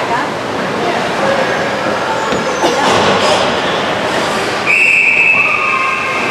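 Arena noise of a youth ice hockey game, with spectators' voices throughout. Near the end a long, shrill, steady high note starts suddenly and holds for over a second.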